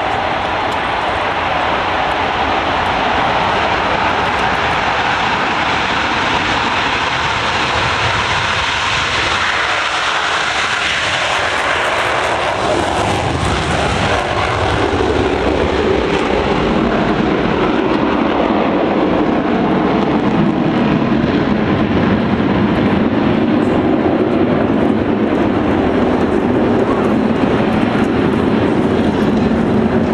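Blue Angels jets flying over, a continuous jet roar; about halfway through the sound sweeps down in pitch as they pass, then settles into a deeper, slightly louder rumble.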